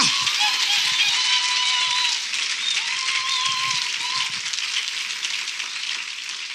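A large congregation clapping and cheering, with scattered calls, slowly dying down.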